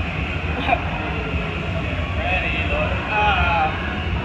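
Steady low rumble of a dark-ride vehicle moving along its track, with scattered voices of other riders in the background.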